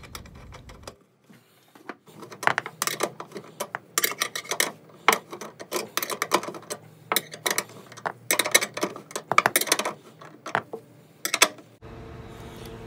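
Ratchet wrench clicking in short runs of rapid ticks, with brief pauses between strokes, as it tightens a nut down onto a threaded rod.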